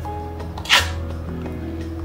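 Ring-pull seal of a metal matcha powder tin popping open in one short, sharp hiss about a second in, the sudden opening puffing powder out. Background music plays throughout.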